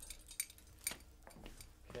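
A few light, sharp clicks and clinks of small objects being handled, scattered through a quiet moment over faint room tone.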